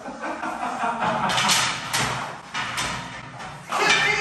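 Wooden bed slats, strung together on fabric straps, clattering and knocking against each other and the bed frame as they are lifted out, in several irregular bursts.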